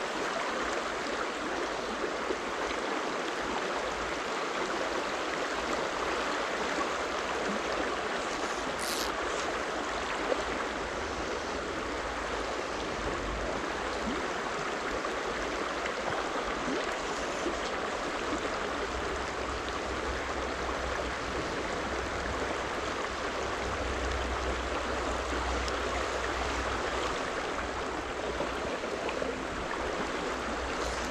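Steady rushing babble of a shallow, stony stream running over riffles.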